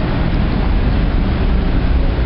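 Steady, loud outdoor noise: wind buffeting the microphone over the hum of street traffic, with a heavy low rumble.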